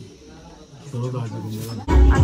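Indistinct voices, growing louder about a second in, then loud music with a heavy bass beat cutting in suddenly just before the end.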